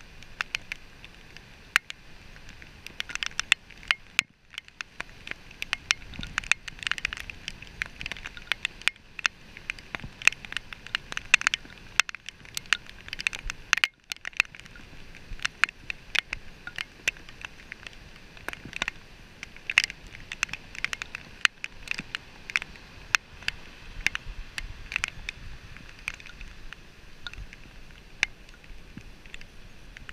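Rain striking close to the microphone as dense, irregular sharp ticks, several a second, with brief lulls about four and fourteen seconds in, over a faint low rush of surf.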